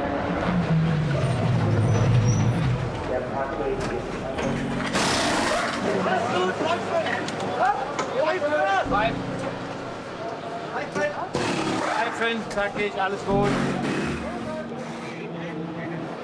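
A Porsche 911 GT race car's engine falling in pitch as it slows into the pits with a failed tyre. About five seconds in comes a short hiss of air, then the pit crew's voices calling out during the stop.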